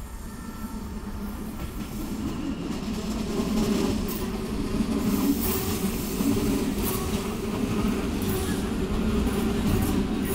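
Class 423 S-Bahn electric multiple unit running along the tracks, a steady rail rumble growing louder over the first few seconds as it comes closer, with intermittent clicks from the wheels on the rails.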